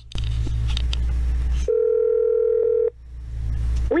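A telephone line tone on a recorded call: one steady beep lasting just over a second, set in low hum and line noise.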